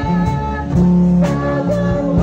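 Live worship band music: a drum kit played with sticks, its cymbal and drum hits cutting through, over a steady bass and guitar, with a woman singing into a microphone.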